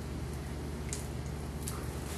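Quiet kitchen room tone: a steady low hum with a couple of faint ticks, about a second in and again near the end.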